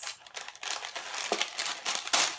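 Wrapping inside a beauty subscription box rustling and crinkling as it is pulled open by hand. The rustle starts a moment in and goes on with little crackles.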